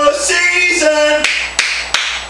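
A man's sung, drawn-out vocal note breaks up and trails off in the first second. Then hand claps follow, three sharp claps about a third of a second apart.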